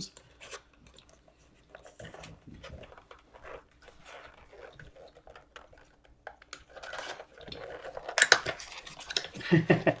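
Crackling and rustling of a trading-card pack being torn open and its cards handled, a run of small irregular crinkles with a louder burst of tearing about eight seconds in.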